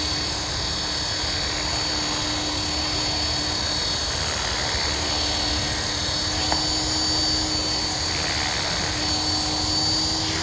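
Align T-Rex 450 Sport V2 DFC electric RC helicopter hovering low over its landing pad: steady rotor sound with a high, steady motor whine, the head speed held constant.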